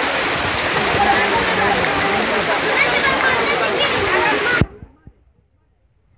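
Floodwater rushing down a street, with a crowd of voices talking over it; the sound cuts off suddenly about four and a half seconds in.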